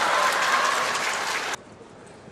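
Audience applauding a won point, easing off slightly and then cut off abruptly about one and a half seconds in.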